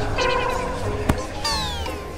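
A drawn-out, meow-like whining cry, then a quick falling whistle-like glide about one and a half seconds in, over background music.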